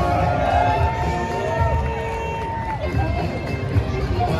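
Outdoor crowd noise of many fans talking, with music and raised voices. A long held note sounds over the crowd and ends sharply just before the three-second mark.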